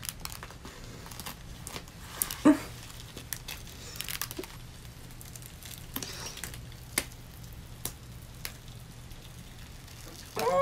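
Glued-on rhinestone appliqué being peeled off skin and hair, with soft crinkling and tearing and scattered small clicks. One sharper snap-like sound comes about two and a half seconds in.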